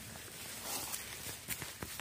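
Footsteps and rustling in dry fallen leaves as a person gets down onto the forest floor, with a few short clicks and crackles near the end.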